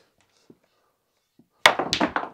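Near silence, then near the end two sharp clicks about a quarter-second apart: a cue tip striking the cue ball and snooker balls knocking together as a red is driven at a corner pocket, struck a bit too hard.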